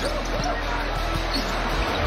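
A basketball bouncing a few times on a hardwood court over steady arena crowd noise.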